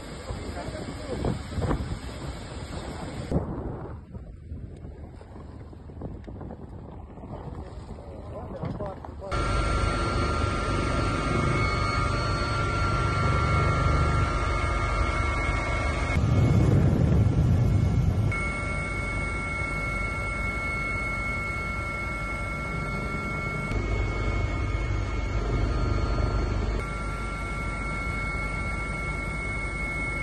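Wind on the microphone and indistinct voices, then, about nine seconds in, a sudden switch to helicopter cabin noise: a steady high whine over a loud low drone that continues to the end.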